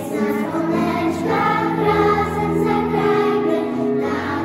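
Children's choir singing a Christmas song in Polish in unison, over steady low notes of an instrumental accompaniment.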